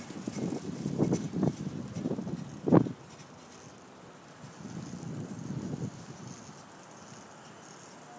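Wind buffeting a phone's microphone in uneven gusts, with a sharp bump about three seconds in. After that it settles into quieter outdoor street ambience, with one softer gust near the middle.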